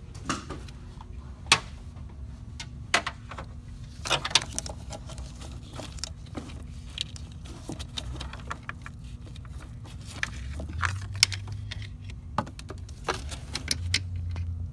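Fuel pressure test gauge's hose and Schrader valve adapter being handled and fitted onto the fuel rail's Schrader valve by hand: scattered small metallic clicks and clinks, about a dozen, over a steady low hum.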